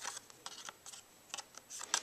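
Cardstock being handled against a thin metal Framelits die: faint paper rustles and a few light taps, the last and loudest just before the end.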